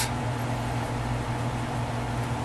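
Steady low hum with a faint even hiss: background room tone, with no clicks or other distinct events.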